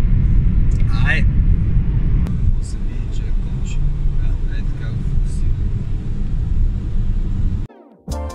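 Steady low rumble of road and engine noise inside a moving car's cabin, with a brief voice about a second in. The rumble cuts off suddenly near the end.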